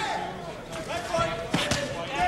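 Arena crowd shouting, with a few sharp thuds in the second half as boxing punches land and are blocked in a close exchange between two heavyweights.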